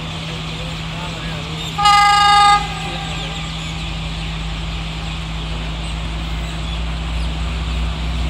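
Diesel passenger train sounding one short horn blast about two seconds in as it approaches. Its low rumble runs steadily underneath and grows louder near the end as the train draws closer.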